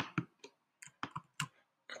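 A handful of sharp, irregular clicks from a computer keyboard and mouse, about eight in two seconds, as text is pasted into a code editor.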